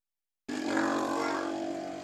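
Silence at first, then about half a second in a motor vehicle engine sets in with a steady hum that slowly fades.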